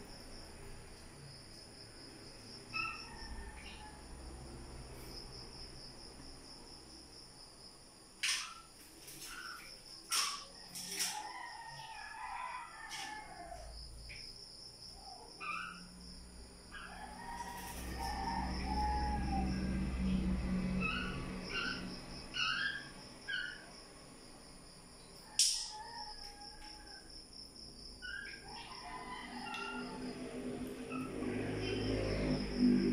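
Scattered short chirps from a fledgling black-naped oriole, coming in small clusters, with a few brief sharp flutters as the wet bird shakes its feathers.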